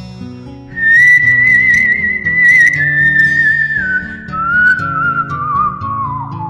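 Background music: a single high, wavering melody line, whistle-like, comes in about a second in over a lower accompaniment and gradually steps down in pitch.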